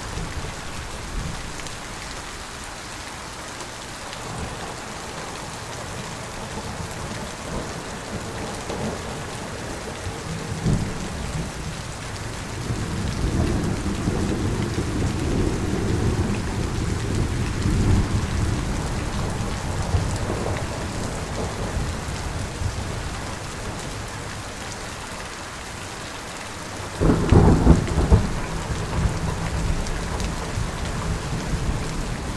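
Thunderstorm: steady rain, with a long low rumble of thunder that rolls in about ten seconds in and fades out about ten seconds later, then a sudden, louder clap of thunder near the end.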